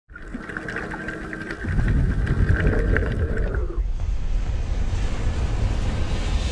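Intro sound effect under an animated logo: a quiet ticking crackle with a steady tone, then from just under two seconds in a loud low rumble with rushing, whooshing noise.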